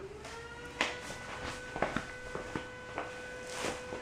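A few footsteps and light knocks as a person walks up to a stainless steel trash can, over a faint steady tone.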